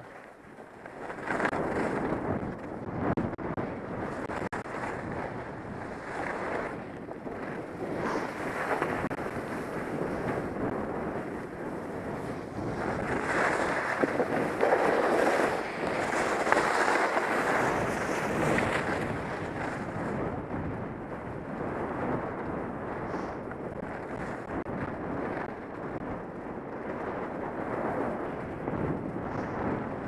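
Wind rushing over a helmet-mounted camera's microphone while skiing downhill, mixed with skis scraping and sliding on packed snow in surging turns. It swells loudest around the middle of the run.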